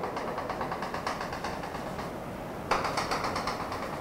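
Chalk on a chalkboard drawing a dashed circle: a quick run of short scratchy taps, louder for a stretch about two-thirds of the way through.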